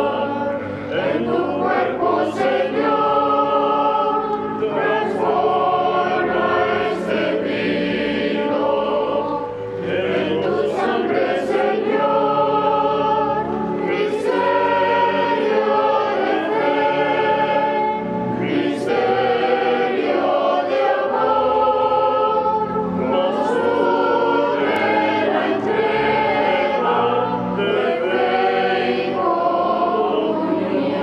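Choir of men's and boys' voices singing a sacred hymn, with pipe organ accompaniment.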